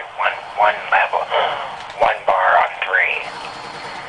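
A person talking over a telephone line, the voice thin and narrow in pitch range, trailing off about three seconds in.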